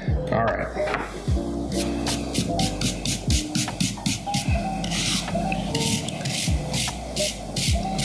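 An abrasive Fret Eraser block is rubbed back and forth over guitar fret ends in a quick run of short scraping strokes. It is smoothing out the file scratches left from dressing the ends. Background music with a steady beat plays throughout.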